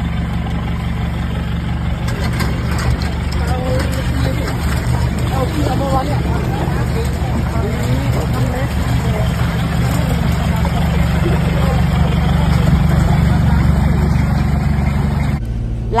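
A vehicle engine idling steadily, with people talking indistinctly over it. The engine sound changes abruptly shortly before the end.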